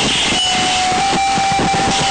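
A song recording buried under loud, steady hiss. About half a second in, a single held note comes in and stays steady.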